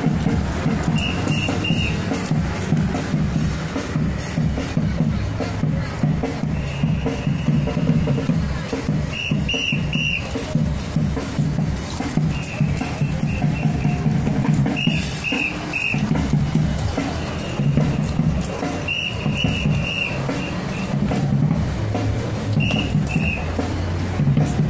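A whistle blown in short groups of two to four quick pips every few seconds, the drill signals for an honor guard's rifle drill, over a steady low din.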